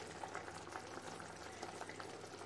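Tomato-onion gravy simmering in a clay pot: a faint, steady bubbling with small scattered pops.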